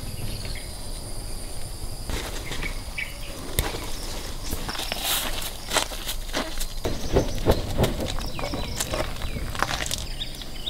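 Outdoor rural ambience: insects keep up a steady, high-pitched drone, with a few short bird chirps about two to three seconds in and scattered clicks and rustles, thickest in the second half.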